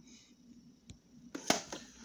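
Quiet room tone broken by a few short clicks and one sharper knock about one and a half seconds in.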